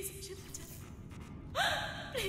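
A woman's sharp, frightened gasp about one and a half seconds in, over a low, dark background rumble.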